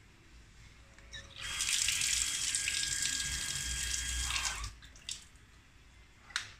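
Water running hard from a tap on an automatic booster-pump line for about three seconds, with a thin steady whine under the rush. It stops about four and a half seconds in and is followed by a short click.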